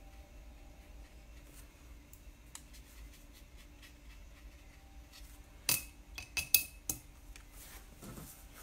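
Paintbrush clinking against a glass water jar: a quick cluster of sharp clinks about six to seven seconds in, one with a short ringing tone, over a quiet room with a faint hum.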